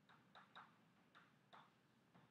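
Chalk writing on a blackboard: faint, irregular taps and short scratches as the chalk strikes and drags across the board, about five in two seconds.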